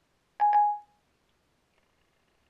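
Siri's short two-note electronic chime from the iPad's speaker, about half a second in, sounding as Siri stops listening and takes the spoken command.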